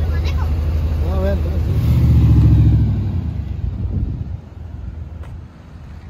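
Chevrolet S10 pickup truck engine running, swelling to its loudest about two seconds in as the truck pulls away, then fading as it drives off down the road.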